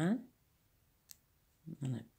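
Speech trailing off, then a single sharp click about a second in, and a short spoken sound near the end.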